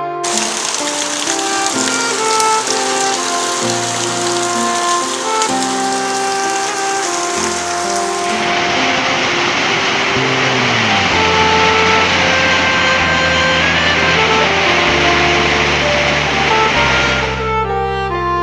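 Heavy rain falling in a steady hiss, with instrumental music playing over it. The rain sound changes in tone about halfway through and fades out near the end.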